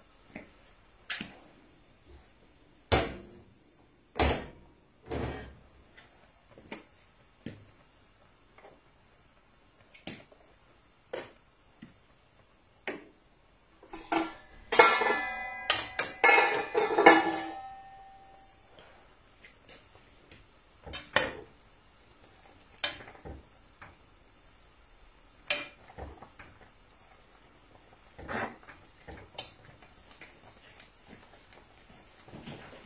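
Pots, lids and metal utensils being handled on a kitchen counter and stove: scattered knocks and clinks, with a dense burst of metallic clattering and ringing about halfway through.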